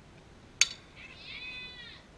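A softball bat hitting a pitched ball: one sharp crack with a short ring, about half a second in. A high-pitched voice follows with one long shout.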